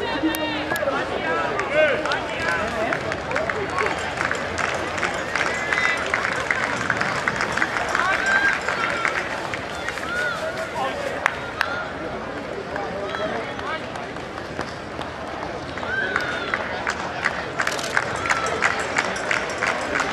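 Ballpark crowd chatter, with several voices talking over one another and scattered claps.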